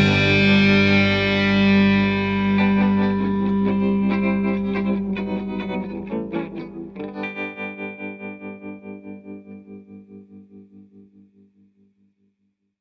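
The closing chord of a rock song on distorted electric guitar ringing out and slowly dying away, with a few more notes struck midway. From about seven seconds in, the fading sound pulses about three times a second until it is gone.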